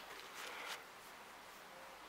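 Quiet room tone with a faint, brief rustle in the first second.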